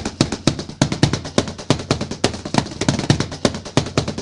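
Rapid drumming that starts suddenly: a fast, busy run of sharp strikes, several a second.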